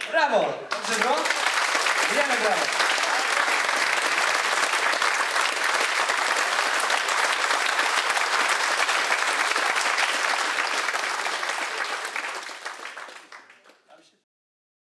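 Audience applauding in a hall after a live acoustic set, with a few voices calling out over the clapping in the first couple of seconds. The applause fades out near the end.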